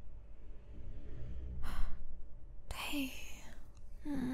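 A woman's breathing close to the microphone: a quick breath in about halfway through, then a longer sigh out near the end with a brief voiced note in it.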